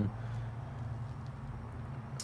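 A steady low hum of room background, with no distinct event.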